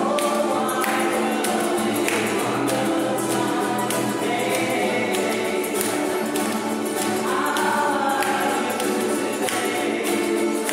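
Several voices singing a song together, with ukuleles, a banjo and an acoustic guitar strummed in a steady rhythm.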